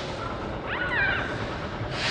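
A short pitched animal cry about a second in, gliding down in pitch, over steady background noise.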